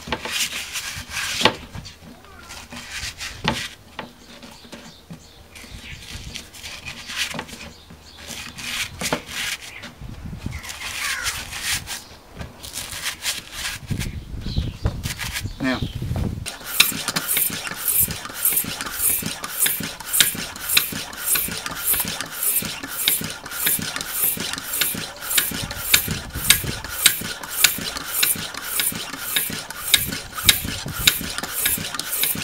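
Rubber tyre bead being levered and pressed back onto a steel wheel rim, with irregular scraping, rubbing and knocks. From a little past halfway the tyre is pumped up through its new valve, with even, airy pump strokes about one and a half a second.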